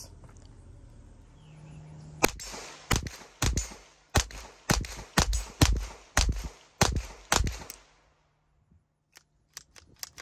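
Standard Manufacturing Jackhammer .22 LR direct-blowback pistol firing a 10-round magazine of CCI Mini-Mag .22 LR: about ten sharp shots, roughly two a second, starting about two seconds in. A few light clicks come near the end.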